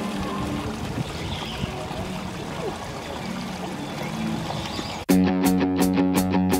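Ambient background noise with a faint low hum, then background guitar music with a steady beat cuts in suddenly about five seconds in.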